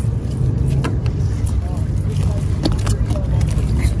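Steady low rumble with a few faint clicks and knocks.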